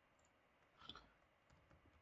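Near silence with a few faint, short computer keyboard and mouse clicks, the clearest about a second in.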